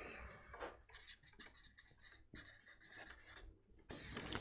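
Marker pen scratching across flip chart paper in a run of short strokes, from about a second in, with a brief pause near the end before more writing.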